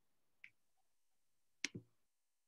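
Near silence broken by two short clicks: a faint one about half a second in, and a louder one near the end followed at once by a duller knock.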